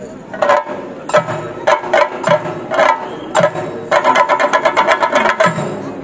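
Chenda drums beaten with sticks: sharp single strokes spaced through the first few seconds, then a fast roll from about four seconds in lasting about a second and a half, and one more stroke near the end.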